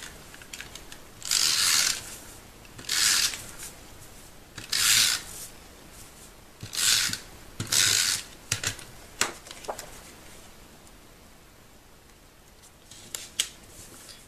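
Cardstock being handled on a work mat as it is stuck into a card: five short dry rasping strokes about a second or two apart, then a few light clicks and taps, with a quiet stretch before more clicks near the end.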